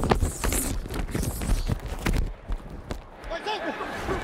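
Football players' cleats and pads during a play: a quick, irregular run of thumps and knocks from feet and colliding bodies, heard close up on a player-worn microphone, with voices coming in near the end.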